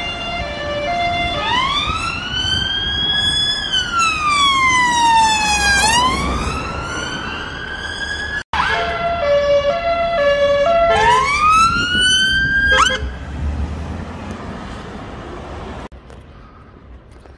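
Emergency vehicle siren, first sounding two alternating tones, then switching to a slow wail that rises and falls. It breaks off suddenly midway, comes back with alternating tones and another rising wail, and stops short near the end, leaving low traffic rumble.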